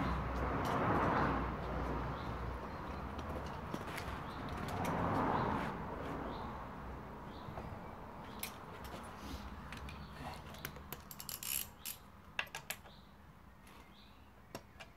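Light clicks and metallic knocks of hands and a tool handling a chainsaw at rest, scattered through the second half and more frequent near the end, as its covers are about to come off. Earlier, two broad swells of hiss rise and fall.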